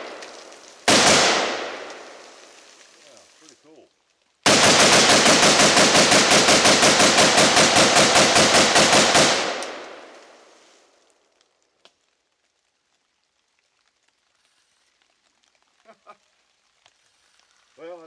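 AK-47 rifle in 7.62×39 firing: a single shot about a second in, then after a pause a rapid string of shots lasting about five seconds. The echo fades away over a couple of seconds after the last shot.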